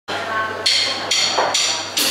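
A drummer's count-in: four evenly spaced clicks, a little over two a second, with a bright ring, over a steady low amplifier hum.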